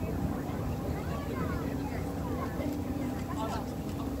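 Passenger ferry's engine running at a steady cruising drone, with a constant low hum, as the boat crosses the harbour.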